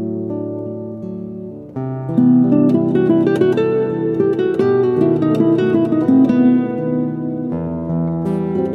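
Background music on plucked acoustic guitar: a few held notes, then from about two seconds in a louder, busier run of plucked notes.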